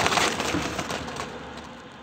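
Baked popovers tumbling out of a car onto asphalt: a dense crackling crunch that is loudest at the start and dies away over about two seconds.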